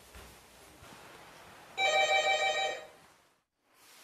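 An electric doorbell ringing once for about a second, a bright steady ring with a fast trill in it, which then cuts off.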